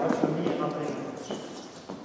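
Quick footsteps of a player running on a hard gym floor: a few short knocks.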